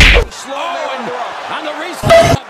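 A loud, sharp punch-impact sound effect, a slam-like smack, right at the start as a punch lands, followed by quieter background voices.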